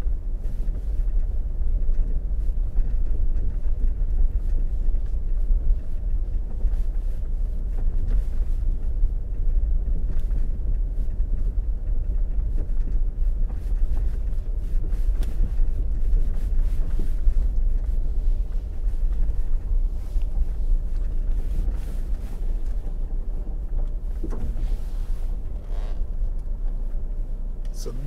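Low, steady rumble of a vehicle moving slowly along a rough dirt track.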